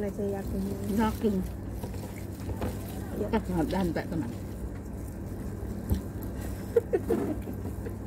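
Indistinct voices come and go over a steady low hum, with a few sharp clicks, the loudest about seven seconds in.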